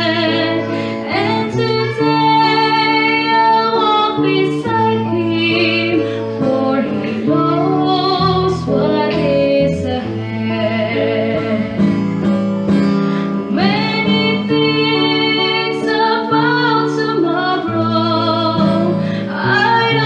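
A woman singing a slow gospel song into a microphone over an accompaniment with plucked strings, sustaining notes with vibrato.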